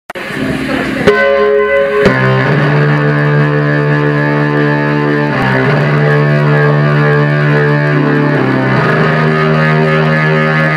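Live band music led by synthesizer keyboards: held, layered chords that change every few seconds, with sharp attacks on the first two changes about one and two seconds in.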